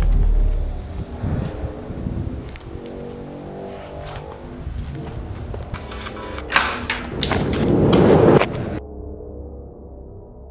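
Dark, tense film soundtrack: a deep boom dies away in the first second, then a sustained droning chord with scattered clicks. Near the end, loud noisy swells build and cut off suddenly, leaving a quieter low drone.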